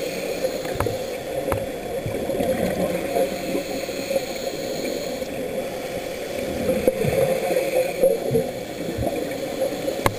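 Scuba regulator exhaust bubbles gurgling underwater, picked up through an underwater camera, with a few faint clicks.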